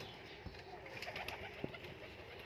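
Domestic pigeons cooing softly, with a few light clicks.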